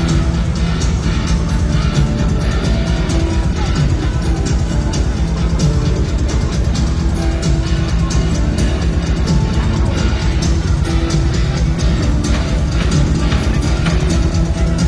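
Live band playing loud music with a steady drum beat, with no vocals heard.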